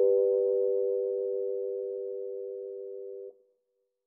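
A sustained electric piano chord, several notes held together, slowly fading, then cut off suddenly about three seconds in as the keys are released.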